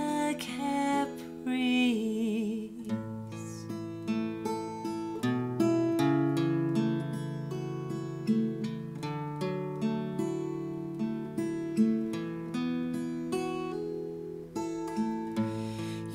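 Steel-string acoustic guitar with a capo, played as an instrumental passage of picked notes and chords. A held, wavering sung note trails off over the first couple of seconds before the guitar carries on alone.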